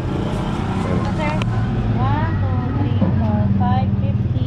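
Indistinct talking over a steady low motor hum, like a vehicle engine idling nearby.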